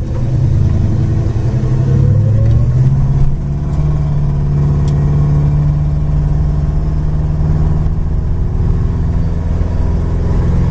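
Plymouth Duster's 318 V8 engine heard from inside the cabin, rising in pitch as the car accelerates, then dropping in revs about three seconds in as the transmission shifts up, before settling into a steady cruise.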